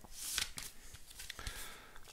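Soft rustling and sliding of thin card as cardboard gatefold CD sleeves and paper inner sleeves are handled, slightly louder about half a second in.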